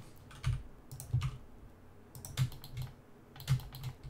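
Computer keyboard keystrokes: scattered, irregular taps, some coming in quick pairs, as keys are pressed for shortcuts.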